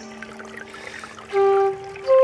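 A small brook trickling in a pause in bansuri flute music, with one short held flute note a little past halfway.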